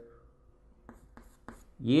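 Chalk writing on a chalkboard: three short strokes about a third of a second apart in the second half.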